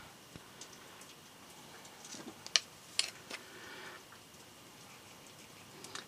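Quiet room tone with three faint, sharp clicks close together about halfway through.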